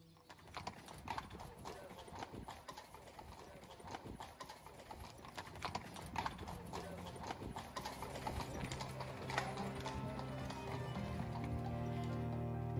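A horse's hooves clip-clopping as it pulls a cart, a quick run of hoof strikes throughout. Background music swells in near the end.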